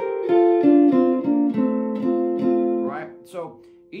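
Telecaster-style electric guitar with a clean tone playing a melodic single-note line over an F chord, picked notes at about three a second stepping mostly downward. It fades near the end as a man's voice comes in.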